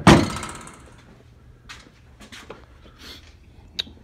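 A steel vehicle hood slammed shut with one loud thunk at the very start, the sheet metal ringing briefly, followed by a few light knocks and a sharp click near the end.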